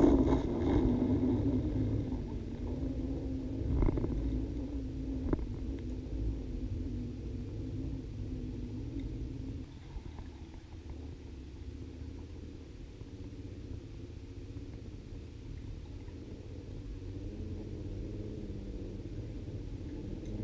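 Low underwater rumble picked up by a submerged camera, strongest at first and fading over the first ten seconds, with two faint knocks about four and five seconds in.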